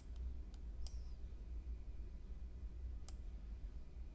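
A few faint computer mouse clicks, three in the first second and one about three seconds in, over a low steady hum.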